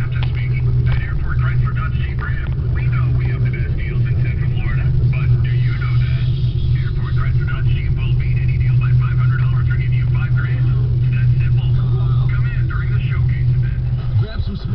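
Steady low drone of a car's engine and tyres heard from inside the cabin while driving, with a voice from the car radio playing over it.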